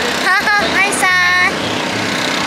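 Mostly speech: a man calls out a short greeting, with a steady low engine hum underneath.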